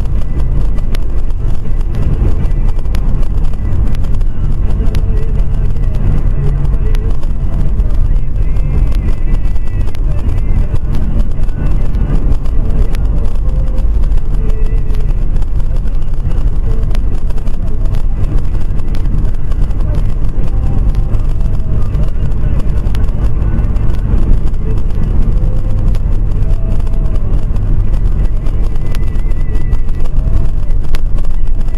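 A car driving: a steady low engine and road rumble picked up inside the cabin by a dashcam, with no sharp impact standing out.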